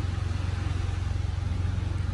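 Steady low drone of an engine running at idle, with a fine, even pulse.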